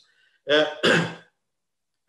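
A man clearing his throat in two short bursts about half a second in.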